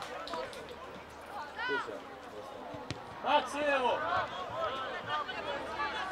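Boys calling out to each other during a youth football match, short distant shouts, with a single sharp thud of a ball being struck about three seconds in.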